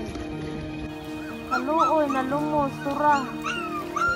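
A dog whimpering and yelping: a string of short, high, rising-and-falling cries starting about a second and a half in, over steady background music.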